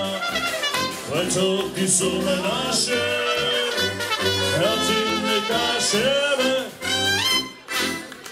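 Live folk band music led by a trumpet over accordion accompaniment, with the trumpet's melody on top. Near the end a quick rising trumpet run closes the tune and the music stops.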